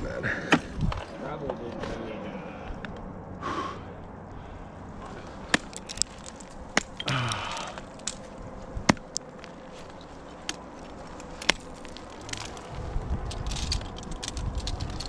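Ice axes and monopoint crampons striking into steep water ice during a lead climb: a series of sharp, separate strikes spaced irregularly a second or more apart, with softer scuffs in between.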